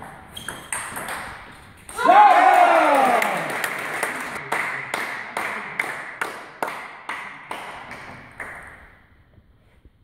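Celluloid/plastic table tennis ball clicking sharply off bats and table in a rally, roughly two hits a second. A loud shout with falling pitch comes about two seconds in, and the ball sounds stop near the end.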